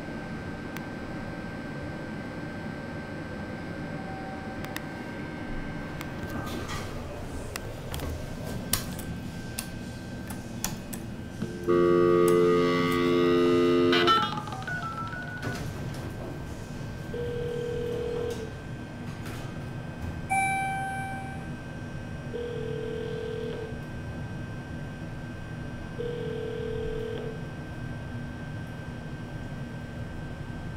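A Schindler MT elevator's old-style buzz chime sounds once as a loud, steady buzz lasting about two and a half seconds, about twelve seconds in. It comes after a few scattered clicks and over a steady background hum. Later, as the car rides up, a few short electronic beeps of about a second each sound, spaced several seconds apart.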